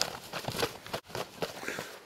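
A freshly shot wild turkey, held up by its legs, beating its wings in reflexive death flaps: a run of irregular wingbeats and feather rustles. The bird has been head-shot and is already dead, so the flapping is involuntary.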